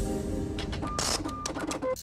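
Logo sting of music and sound effects: a held chord over a low rumble dies away in the first half second, then a run of quick clicks with a few short high beeps.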